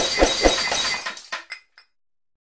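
Glass-shattering sound effect: a crash of breaking glass with several quick knocks, fading over about a second into a few scattered tinkles.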